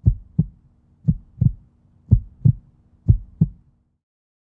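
Heartbeat sound effect for a logo intro: four pairs of deep thumps, the two in each pair about a third of a second apart, repeating about once a second over a faint low drone. It stops shortly before the end.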